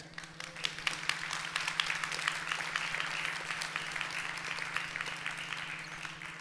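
Audience applauding, building up within the first second, holding steady and tailing off near the end.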